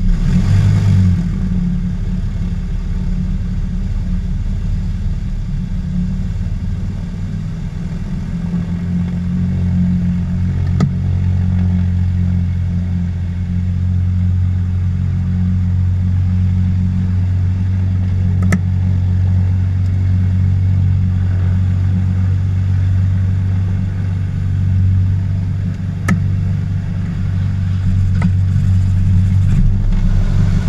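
Aero Commander 500S Shrike's six-cylinder Lycoming piston engine catching right at the start, then idling steadily with a low drone, heard from inside the cockpit. A few faint clicks sound over it.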